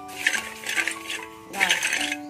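Background music with sustained notes, over dry rice grains scraped and stirred around a hot wok with a metal spatula, which gives a recurring sandy rasp as the rice is toasted.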